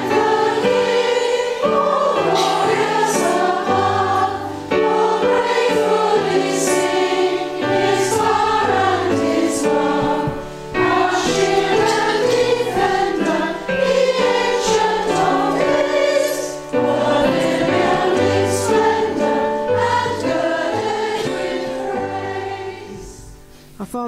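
A congregation of women singing a hymn together with instrumental accompaniment, with short breaths between lines. The singing fades out near the end.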